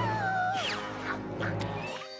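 Cartoon comedy scoring: a long wailing tone that slides down in pitch and breaks off about half a second in, followed by a quick falling whistle-like glide, over steady background music.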